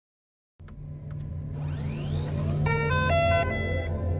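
Cinematic reveal sting after a short silence: a low bass drone that swells steadily, rising whooshes climbing in pitch, then a quick run of bright synth notes stepping through chords in the second half.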